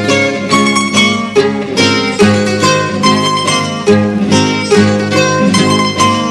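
Instrumental jota passage played by a rondalla of plucked strings, bandurrias over guitars, with a quick run of plucked notes over strummed chords.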